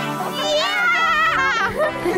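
Excited, high-pitched children's voices over background music, with no clear words.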